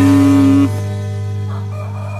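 A man's voice drawing out one word, a long held 'Daan…' that ends about two-thirds of a second in, followed by a steady low hum with faint background music.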